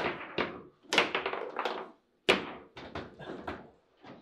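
Table football in play: sharp knocks of the ball against the plastic figures and table walls, with clacking of the rods, in three quick flurries, the loudest just after two seconds in.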